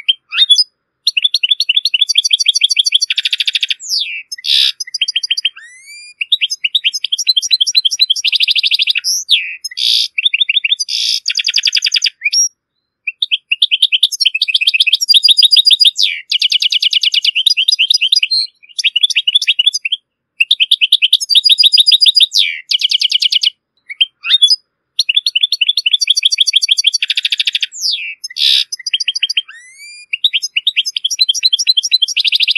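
European goldfinch singing: long runs of rapid twittering trills and quick rising notes, in phrases broken by a few short pauses.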